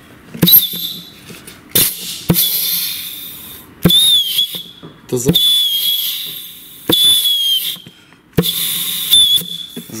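Compressed air blown in short blasts into a clutch pack passage of a 09G six-speed automatic transmission, to air-check the pack. There are about seven blasts, each a hiss with a high whistling tone that begins with a sharp clack as the clutch piston applies the pack. The mechanic judges that this pack does not whistle, meaning its piston seals hold.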